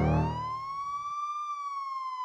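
A siren wail: one pitched tone that rises over about a second, holds, then eases slightly downward, while music dies away in the first moments.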